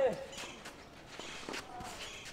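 Tennis rally on a clay court: a player's grunt from his forehand fades out, then a few fainter racket-on-ball hits and footsteps on the clay, with one hit about one and a half seconds in.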